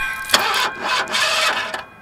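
A car's starter cranking the engine, which does not catch, with a sharp click near the start and stopping shortly before the end. The car fails to start, which the occupant blames on an empty gas tank.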